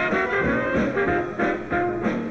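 A live jazz band playing together: cornet, trombone and alto saxophone in ensemble over a steady beat from banjo, piano, bass saxophone and drums.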